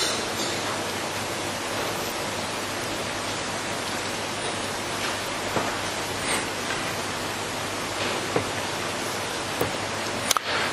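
Steady hiss of background noise during a gap in speech, with a few faint, short ticks scattered through it.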